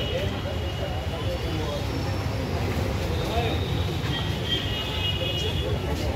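Indistinct voices of people talking outdoors over a steady low rumble of street traffic.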